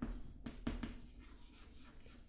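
Chalk writing on a chalkboard: a few quick scratching strokes in the first second, then fainter scraping as the word is finished.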